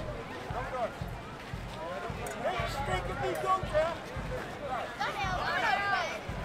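Crowd chatter: many voices talking over one another, some of them high-pitched, with soft low thuds underneath.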